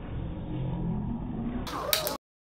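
Hot Wheels die-cast toy car rolling down a plastic track: a steady low rolling rumble over classroom room noise. Near the end it breaks off into a sharp, louder sound.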